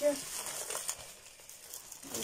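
Plastic grocery packaging crinkling and rustling as it is handled, a few light crackles in the first second, getting fainter.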